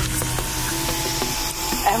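A car's tyres rolling slowly over a snow-covered road as it pulls in, a steady hiss.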